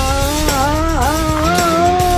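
A long, drawn-out cartoon yell that wavers in pitch and dips sharply about halfway through, over a loud rushing sound effect with a low rumble.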